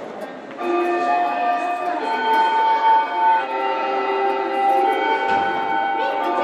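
Several sustained tones sound together, starting suddenly about half a second in and changing pitch every second or so, like a held chord or a slow melody.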